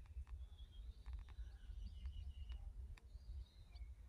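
Faint outdoor birdsong: scattered thin, high chirps and short notes over a low steady rumble, with a few soft ticks near the middle.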